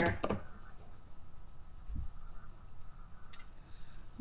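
Plastic knife handle pressed and rubbed into a warmed encaustic wax surface: faint scraping and rubbing, with a few light clicks at the start, a soft thump about halfway and a sharp click near the end.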